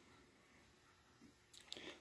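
Near silence: room tone, with a few faint clicks near the end.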